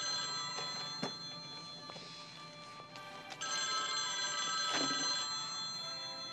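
Telephone bell ringing, two long rings with a short break about three seconds in.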